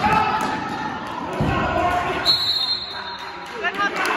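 A basketball bouncing and players moving on a gym floor, with spectators' voices. A little past halfway, a referee's whistle sounds for about a second, stopping play.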